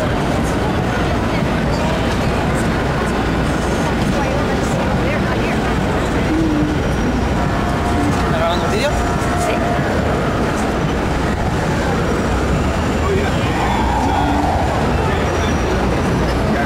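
Busy city street ambience: a steady din of many people's voices mixed with traffic noise.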